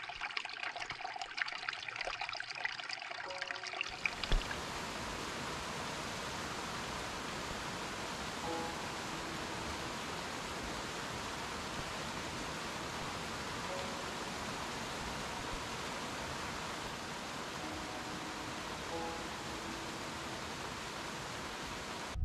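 Small mountain creek trickling and bubbling over rocks. After about four seconds it gives way to the steady rush of water tumbling down a rocky cascade.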